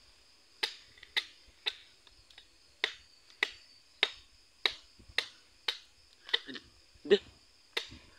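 Machete blade chopping a hand-held green coconut, about a dozen sharp, crisp strikes roughly every half second as the husk is trimmed away.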